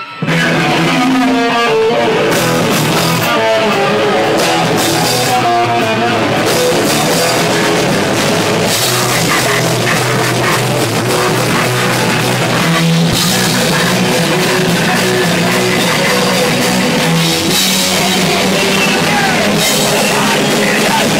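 Live thrash/hardcore punk band playing loud and fast: distorted electric guitars and a drum kit, kicking in suddenly at the start and holding at full volume.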